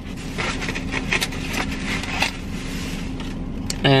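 A styrofoam clamshell takeout container being handled and set aside, the foam rubbing and squeaking with scattered small clicks and scrapes.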